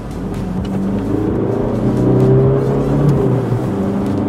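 Audi A3's engine under full throttle, heard from inside the cabin as the car accelerates from about 50 km/h. The engine note rises steadily and grows louder, dips briefly about three seconds in, then climbs again.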